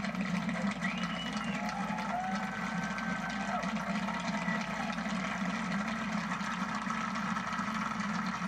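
Audience applause with a few faint calls from the crowd, played through a television's speaker and picked up by a phone in the room.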